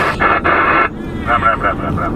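Two-way radio in a car: a burst of hiss for most of the first second, then a fast, even run of short, clipped voice-like sounds through the radio.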